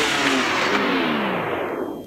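The end of a rock-style radio intro jingle, played as a falling sweep: the pitch slides down and the sound grows steadily duller until it cuts off near the end.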